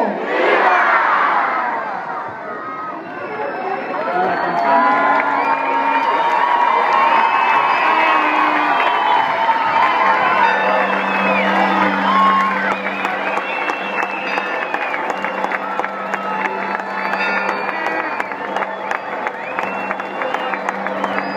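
Large crowd cheering and shouting in many overlapping voices, answering the closing '¡Viva México!' cries of the Grito de Independencia. A steady low tone joins the cheering about halfway through.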